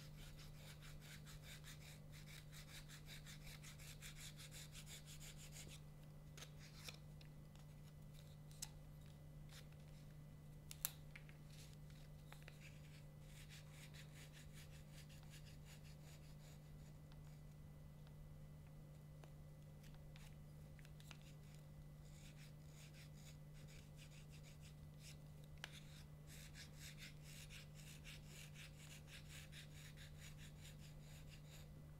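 Small knife blade scraping krummhorn reed cane in quick, short, faint strokes while profiling (thinning) the cane; the strokes are fainter through the middle, with a few light clicks.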